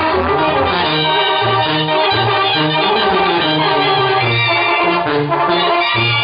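Sinaloan-style banda playing live: a tuba bass line steps from note to note about every half second under sustained trumpets and trombones.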